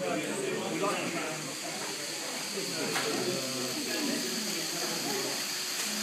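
Indistinct background voices over a steady hiss, with a single sharp click about three seconds in.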